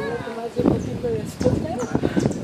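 People talking in the background, with a few short, high, falling chirps over the voices about a second in and near the end.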